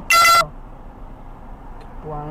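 A short, loud beep lasting about a third of a second at the very start, followed by a low steady background noise.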